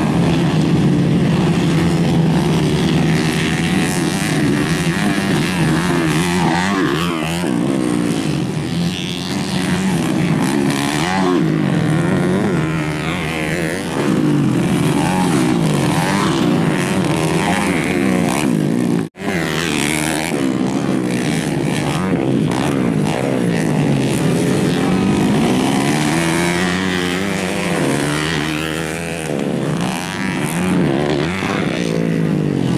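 Several racing dirt bikes' engines revving up and down as the bikes ride the course, with overlapping engine notes rising and falling in pitch. The sound cuts out for an instant about two-thirds of the way through.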